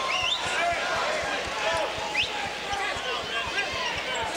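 Arena crowd chatter during a stoppage in a basketball game, with a basketball bouncing on the hardwood floor.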